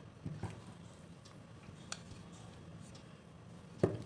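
A few faint knocks of a wooden rolling pin against a wooden board while a piece of layered dough is lightly pressed and rolled. The loudest, sharpest knock comes near the end.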